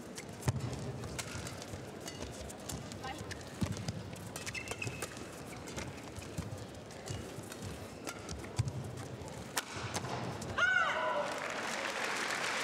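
Badminton rally: a quick run of sharp racket strikes on the shuttlecock, with players' shoes squeaking and thudding on the court. The crowd starts cheering about ten seconds in as the point ends.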